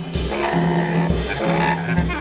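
Free-improvised bass clarinet and drum kit: the bass clarinet holds a low note that breaks off and restarts, with squealing, shifting overtones above it, while sharp drum hits fall a few times.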